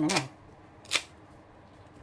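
One sharp snap about a second in, given as the signal for a card trick, with quiet room tone around it.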